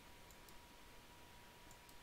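Near silence: faint room tone with a thin steady hum and a couple of faint clicks early on.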